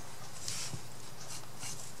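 Paintbrush dabbing and swishing through a blob of paint on paper: a few soft, short brushy strokes over a low steady hum.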